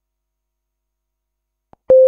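Near silence, then near the end a click and a single steady mid-pitched electronic beep that starts suddenly and begins to fade: an animation sound effect.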